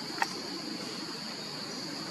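Steady high-pitched drone of insects calling, with one sharp click about a quarter second in.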